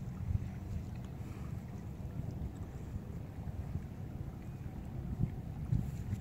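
Wind buffeting a phone's microphone on a calm seashore: a steady low rumble with no distinct events.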